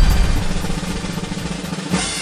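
A suspense drum roll in the music, fading steadily.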